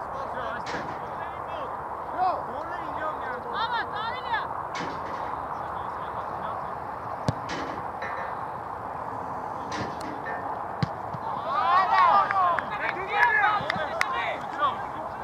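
Football players shouting to each other across an open pitch, the shouts growing busier near the end, over a steady outdoor background noise. A handful of sharp single thuds of the ball being kicked stand out.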